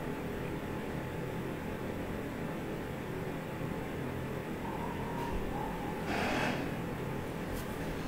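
Steady low hum and hiss of room background noise, with a faint short tone about five seconds in and a brief soft hiss about six seconds in.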